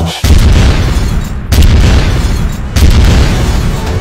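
Three deep boom hits, about one and a quarter seconds apart, each starting suddenly and dying away: the impact sound effects of a film trailer.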